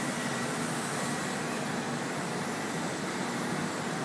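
Steady city traffic noise, an even wash of sound, with a faint constant hum underneath.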